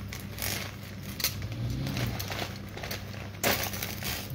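Handling noise from a handbag with a metal chain strap being turned over and shown: irregular rustling and crinkling with a few short sharp scrapes, the loudest about three-quarters of the way through.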